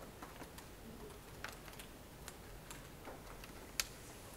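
Faint, irregular clicking of laptop keys being pressed, with one sharper click near the end.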